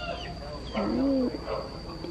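Domestic chickens calling, with one drawn-out call about a second in, and a few short, high, falling chirps from small birds.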